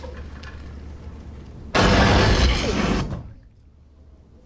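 Cinema sound system: a low rumble, then almost two seconds in a sudden loud blast lasting just over a second. After it the film sound cuts out abruptly, leaving only a quiet room. This is the moment the projector failed, which the audience took for the projector exploding.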